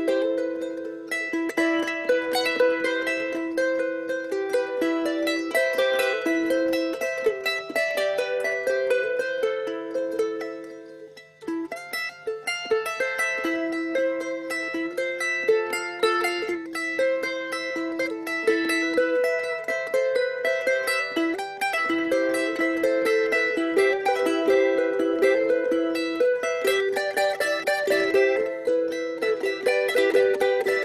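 Plucked string instrument playing a quick picked melody with no singing, pausing briefly about ten seconds in before carrying on.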